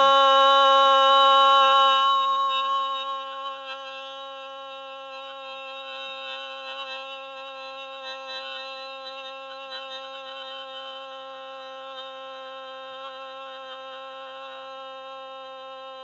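A woman's voice holding a sustained 'ah' on one steady pitch. It is loud for about the first two seconds, then softer but unbroken. This is a maximum-duration phonation exercise by a woman with Parkinson disease after LSVT LOUD voice treatment.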